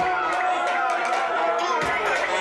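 A party crowd shouting and cheering with a long drawn-out yell, with music playing underneath.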